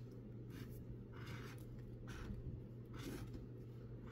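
Scratch-off lottery ticket being scraped with a small hand-held scraper: about four short scratching strokes, with a steady low hum underneath.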